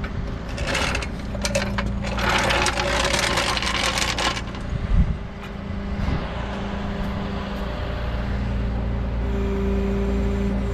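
Rollback tow truck's engine running steadily, with a hum that holds one pitch. A hissing rush lasts about three seconds early on, and a single sharp thump comes about five seconds in.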